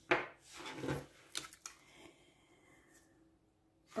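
A small silver Buddha figurine set down and slid on a wooden tabletop, a short knock and scrape, followed by a rubbing sound and a couple of light clicks as cards are handled.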